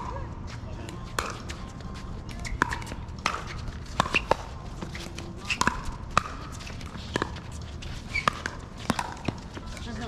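Pickleball paddles striking the hard plastic ball: a string of sharp pocks at irregular intervals, some in quick pairs, with voices in the background.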